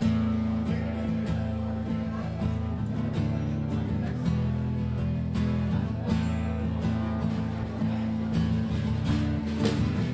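Acoustic guitar strummed in a live performance, an instrumental passage with no singing, starting suddenly at the very beginning.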